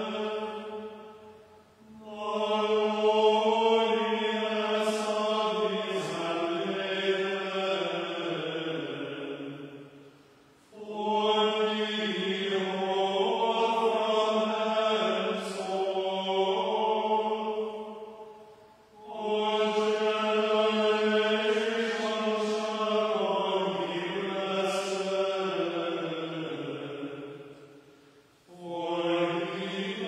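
A small choir chanting plainchant in unison in a church. The voices recite on one held note, and each phrase ends in a falling cadence. Three phrases are sung, with a short pause for breath between them.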